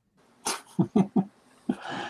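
Laughter: a breathy burst, then three short chuckles in quick succession, ending in a breathy exhale.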